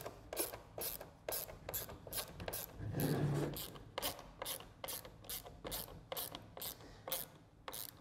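Ratcheting screwdriver clicking as a screw is driven by hand into a sheet panel, a quick even run of about three clicks a second.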